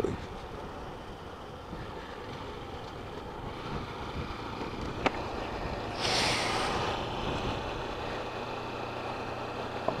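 Motorcycle engine running at steady cruise with wind and road noise, heard from the rider's position. A single click comes about five seconds in, and a brief louder rush of hiss about six seconds in.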